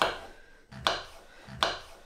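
Kitchen knife dicing chestnut mushrooms on a chopping board: three sharp chops, a little under a second apart.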